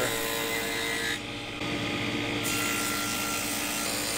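Table saw running with its blade cutting tenon cheeks in a hardwood workpiece in repeated passes. The motor hum stays steady, while the cutting noise drops away about a second in and comes back about a second later.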